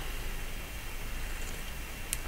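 Steady hiss of recording noise, with no distinct sound.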